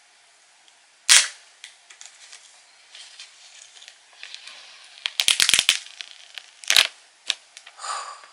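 Plastic shrink-wrap being pulled and torn off a phone box: a sharp snap about a second in, a quick run of crackles around five seconds, and another snap near seven seconds, with faint rustling between.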